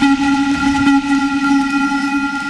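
Hard techno track in a breakdown: a single synth chord held steady, with no kick drum under it.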